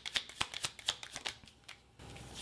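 Tarot deck being shuffled by hand: a quick run of light card clicks and flicks that dies away shortly before the end.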